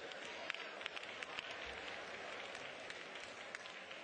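Church congregation applauding, many sharp hand claps over a crowd hiss, slowly dying down.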